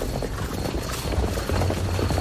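Horses' hooves clip-clopping in an irregular run of strikes, a radio-drama sound effect of mounted soldiers passing.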